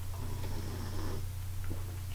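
A man drinking from a plastic cup, with faint swallowing and breathing in the first half, over a steady low hum.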